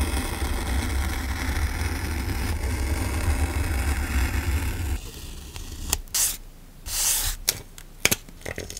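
Precision craft knife blade cutting through printed paper on a journal page, a steady scratchy drag that stops about five seconds in. A few short papery rustles follow near the end.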